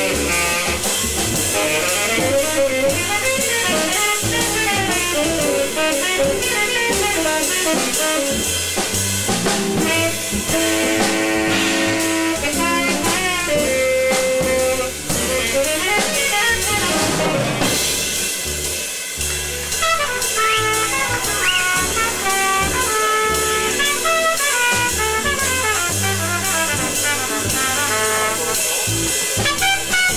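Small jazz ensemble playing: saxophone and trumpet lines over bass and drum kit, with runs of quick melodic notes throughout.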